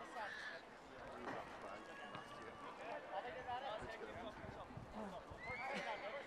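Faint, indistinct voices of footballers and onlookers calling out across an outdoor football pitch.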